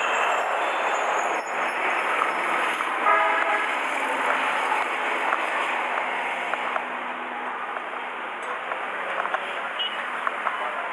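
Steady roadside traffic noise, with a vehicle horn sounding briefly about three seconds in.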